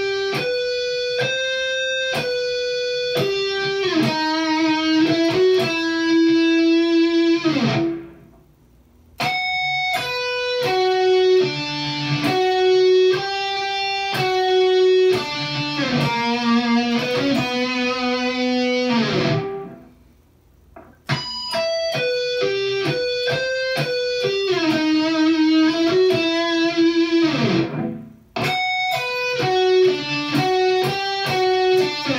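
Electric guitar slowly playing a melodic sweep-arpeggio exercise, picking one note at a time. Each pass of the phrase ends with the pitch sliding down and dying away, and the passes are separated by brief pauses.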